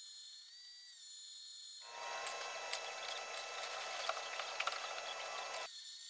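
Small vertical bandsaw running with a thin steady whine, then cutting into steel from about two seconds in until near the end: a rasping scrape with scattered sharp ticks, after which the blade runs free again.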